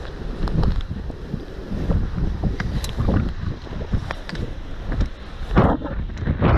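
Wind buffeting the microphone in uneven gusts, with scattered light knocks and rustles from clothing and gear moving against the body-mounted camera.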